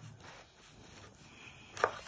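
A knife sawing through a crusty loaf of stale, two-day-old bread on a wooden cutting board, the crust rasping faintly under the blade. A short sharp click near the end.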